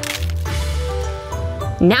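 Wooden disposable chopsticks snapped in half with a sharp crack at the start.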